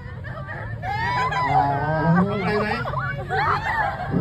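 A man singing a short line into a handheld microphone, his voice gliding on a few held notes, with crowd chatter behind.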